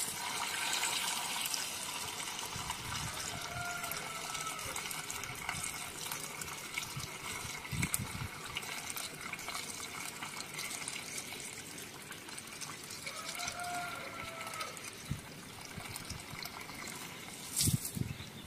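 Water poured steadily from a bucket into a plastic-bottle funnel, running down a PVC pipe into a plastic barrel with a continuous gushing pour.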